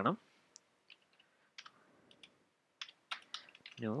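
Computer keyboard being typed on: a sparse scatter of single, separate keystroke clicks at an unhurried pace.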